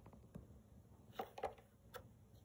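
Light plastic knocks as a cat paws an upturned thin plastic tomato container: two quick clacks a little over a second in, and another near the end.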